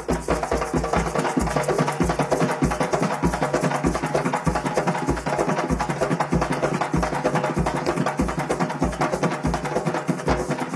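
Afro-Venezuelan San Juan drums (tambores de San Juan) playing a fast, driving rhythm: deep bass drum beats about three a second under dense, rapid hand-drum strokes, with maracas shaking along.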